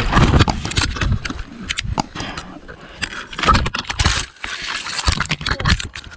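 Mountain bike crash heard from a rider-mounted camera: a rapid jumble of knocks, thuds and scraping as rider and bike tumble through dirt and brush. It stops suddenly near the end.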